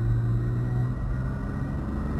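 Toyota Tacoma's 3.5-litre V6 pulling in second gear under acceleration, heard inside the cab as a steady low drone over road rumble. The drone eases about a second in.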